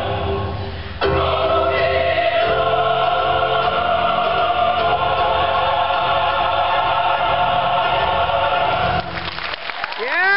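Mixed choir singing sustained chords of a Filipino folk song. The sound breaks off abruptly about a second in and resumes on a new, fuller chord. About nine seconds in the singing ends and applause begins.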